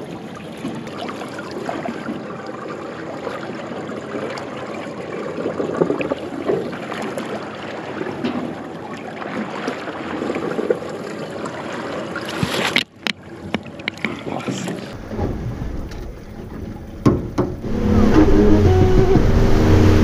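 Water sloshing and splashing against the side of a drifting fishing boat. After a brief break, the boat runs at speed near the end: the outboard engine hums steadily under the rush of water past the hull, louder than before.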